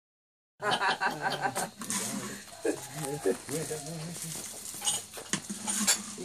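People talking and laughing, with a few sharp clicks from coffee beans being stirred in a roasting pan. The sound starts about half a second in.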